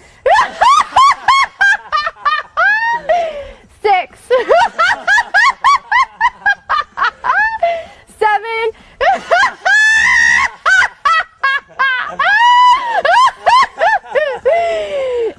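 A woman laughing uncontrollably in high-pitched, honking laughs, several a second, in long runs broken by short pauses.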